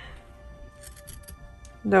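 Pinking shears snipping through the seam allowance around a curved fabric corner, a run of light, quick snips under soft background music.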